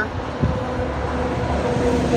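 Steady low background rumble with a faint hum, like a vehicle running nearby, and a single knock about half a second in.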